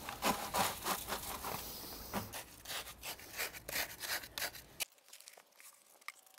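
Wet concrete mix being tipped and scraped out of a plastic bucket into a wooden step form: a run of irregular scraping strokes that stops suddenly about five seconds in.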